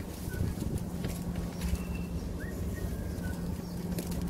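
A steady low hum runs throughout, with scattered soft clicks and a few short, faint, high chirps spaced a second or so apart.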